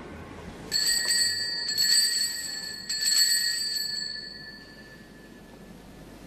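Small altar bell rung in three shakes at the elevation of the chalice, marking the consecration at Mass; the bright ringing tones fade out over a couple of seconds.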